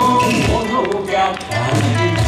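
Yosakoi dance music played over a PA, with sharp taps in it that fit the clack of the dancers' wooden naruko clappers.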